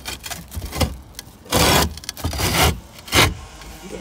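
Roofing felt rustling and scraping against concrete roof tiles as a hand works it in under them, in several short bursts; the longest comes about one and a half seconds in, with a sharp scrape near the end.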